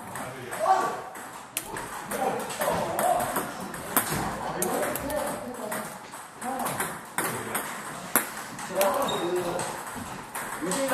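Table tennis balls clicking sharply against paddles and the table: a handful of separate hits spaced a second or more apart. Voices murmur in the background.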